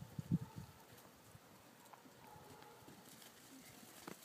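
Soft thudding footsteps on packed snow, a quick run of them in the first second, then a quieter stretch.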